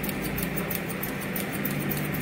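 Barber's hair-cutting scissors snipping in quick succession over a comb, a rapid run of short, sharp clicks about five a second.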